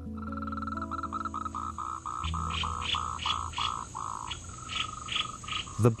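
A run of about a dozen short, evenly spaced animal calls, about three a second, that stops about four seconds in. Soft background music with held low notes lies underneath, and a steady high insect hiss runs on.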